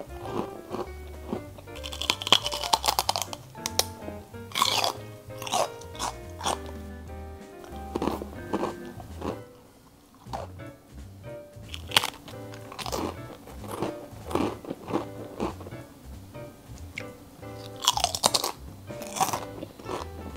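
Crisp snacks being bitten and chewed close to the microphone, one sharp crunch after another, over background music. The crunching lets up briefly about ten seconds in.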